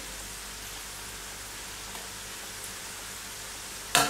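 Crostoli pastry strips deep-frying in hot vegetable oil in an electric frying pan: a steady sizzle, with a sharp knock right at the end.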